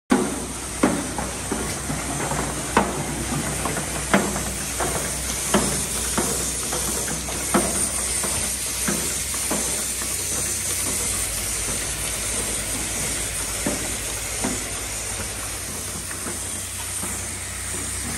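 Automatic cap-plug inserting and pressing machine running: sharp mechanical knocks about every second and a half, over a steady hiss and low hum. The knocks grow weaker and sparser after about ten seconds.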